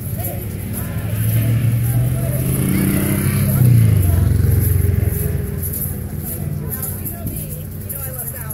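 A motor vehicle passing: a low engine rumble swells over the first few seconds, is loudest about halfway through, then fades. Over it, a high shaking rattle of egg shakers and children's voices.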